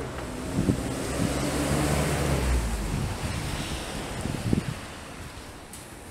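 A low rumbling noise swells for a few seconds and then fades, with a few short thumps, one near the start and one about four and a half seconds in.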